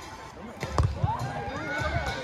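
A volleyball struck by hand in a beach volleyball rally: a sharp slap under a second in, with a fainter hit close by, and players' voices calling around it.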